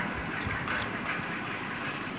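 Steady background noise, an even hiss with no clear rhythm or pitch, with one faint tick a little under a second in.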